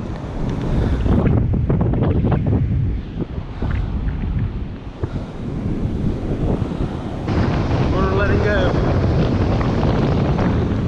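Wind buffeting the camera microphone with a heavy low rumble that rises and falls in gusts, over the steady wash of breaking surf.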